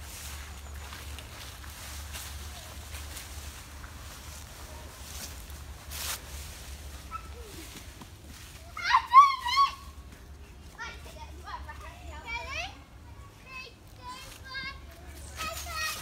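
Children's high, wavering shrieks and squeals of excitement, loudest about nine seconds in, with more scattered high calls over the next few seconds. A low steady hum runs underneath.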